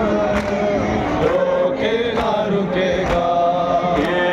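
Men chanting a noha, a Shia mourning lament, led by a male voice through a handheld microphone, with sustained, gliding sung notes. Sharp beats keep time about once a second.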